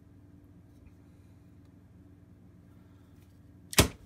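Ganzo G7531-CF folding knife flicked open: one sharp, loud click near the end as the blade snaps open and locks. The action is stiff.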